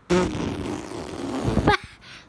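A loud fart-like noise close to the microphone, lasting about a second and three quarters, with a quick rise in pitch just before it cuts off.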